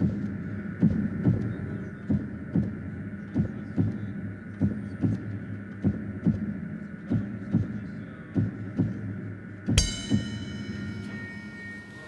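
Produced suspense cue: a heartbeat-style double thump repeating about every 1.2 seconds over a steady drone, building tension as a decision is awaited. About ten seconds in, a sudden bright ringing hit cuts in and fades away.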